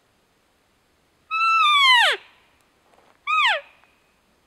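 Hand-held elk call blown twice to imitate an elk: a long call that holds its pitch and then drops steeply, followed about a second later by a short call that rises briefly and falls.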